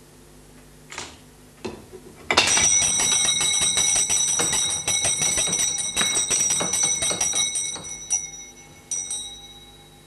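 A couple of light clicks, then a bell ringing rapidly and continuously for about six seconds, set off by a home-made contraption. It stops, then rings briefly once more near the end.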